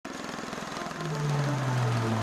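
Rapid, even rotor beat of a V-22 Osprey tiltrotor's proprotors in flight, joined about a second in by background music holding a low sustained note.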